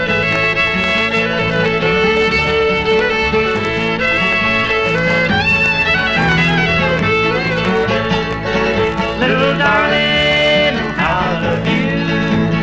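Bluegrass band playing an instrumental passage, the fiddle carrying a wavering melody over steady guitar backing.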